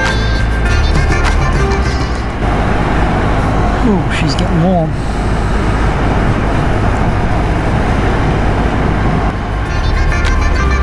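Background music for the first couple of seconds and again near the end; between, the unmusicked ride sound of an adventure motorcycle on a dirt road: wind rush with engine and tyre rumble. A brief wavering tone rises and falls about four seconds in.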